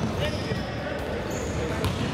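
Several basketballs being dribbled on a hardwood sports-hall floor, an uneven patter of bounces that echoes in the hall, with short high sneaker squeaks and children's voices in the background.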